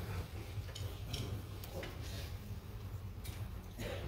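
Quiet room noise in a church hall: a steady low hum with a few faint clicks and rustles.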